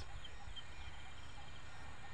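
Quiet outdoor background during a pause: a low steady rumble with a few faint, short high chirps.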